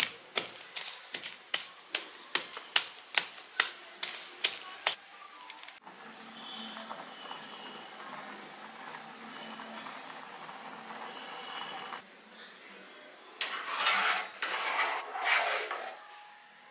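A block of jaggery pounded with a wooden pestle, about three sharp knocks a second for the first five seconds or so. After that comes a steady low hiss from milk heating in an aluminium pot. Near the end come a few seconds of louder scraping and stirring in the pot with a steel spoon.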